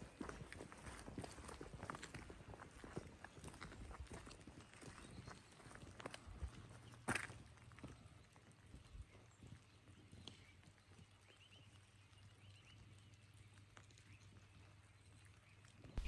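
Faint footsteps on a leaf-strewn asphalt path, a quick run of steps with one sharper click about seven seconds in, then thinning out to quiet outdoor background.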